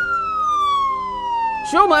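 A game-show losing sound effect: one long electronic tone that glides slowly and steadily down in pitch, marking the contestant's time running out without the right answer.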